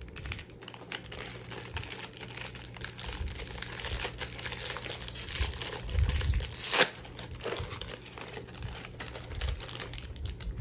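Crinkling and rustling as pens are handled and packed into a pencil bag, with small clicks throughout and one sharp, loud crackle about seven seconds in.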